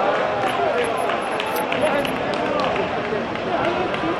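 Several men's voices talking and calling out over one another on an outdoor football pitch, with a couple of brief sharp knocks about a second and a half in.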